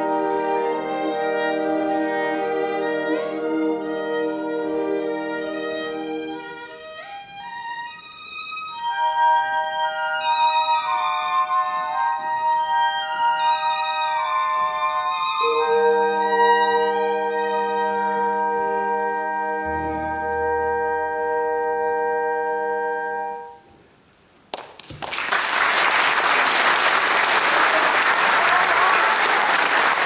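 Solo violin with a symphony orchestra playing the closing bars of a classical piece: a held orchestral chord, a high violin melody with vibrato, then a final sustained chord. The music stops and, after a brief pause, the audience applauds loudly.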